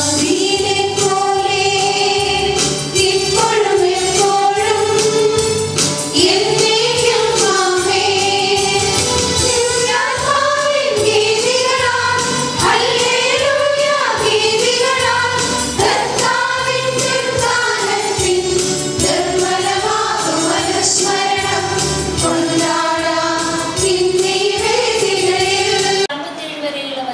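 A choir singing a church hymn, its melody rising and falling steadily.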